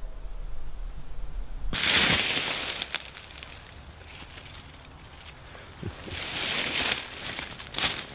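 Footsteps crunching and rustling through dry fallen leaves: a loud spell about two seconds in, quieter rustling after it, and a second spell near the end.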